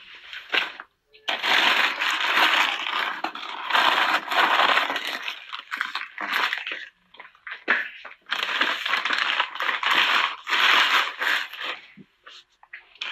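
Loud rustling and crinkling handling noise close to the phone's microphone, in two long stretches: one of about five seconds starting a second in, and one of about three seconds in the second half.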